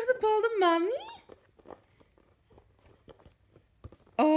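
A baby's high-pitched babbling vocalization, rising and falling in pitch, lasting about a second at the start. After that it goes quiet apart from a few faint taps.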